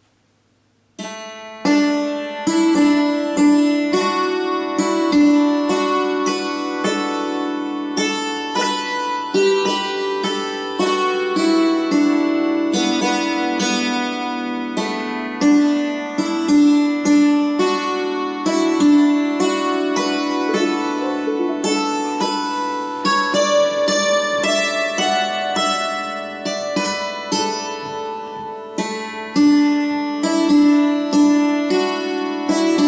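Hammered dulcimer played with two hammers: a waltz in the key of D, the struck strings ringing and overlapping. The playing starts about a second in, after a brief silence.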